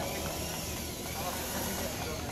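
Steady low background rumble with faint distant voices.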